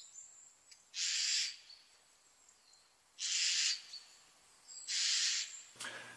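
Eurasian jay giving its contact call, the call jays use between each other as an all-clear: three short, harsh calls about two seconds apart.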